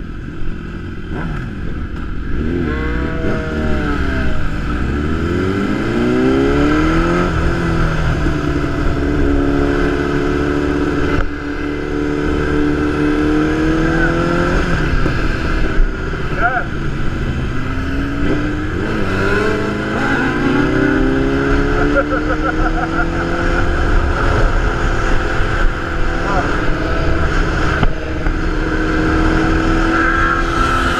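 Sport motorcycle engine accelerating through the gears, its pitch climbing and then dropping at each upshift several times before holding steady at cruising speed, with steady wind noise from riding.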